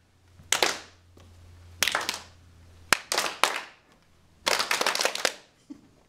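A group of people clapping on cue in short, slightly ragged bursts of one or two claps, with a longer run of scattered claps near the end.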